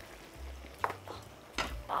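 A few light clicks and knocks of kitchen utensils being handled on the worktop, over a faint low hum.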